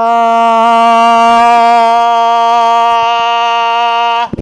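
A man holding one loud, steady 'ooh' on a single pitch, sung as loud as he can push it at a phone decibel meter six inches from his mouth, which reads in the mid-80s dB.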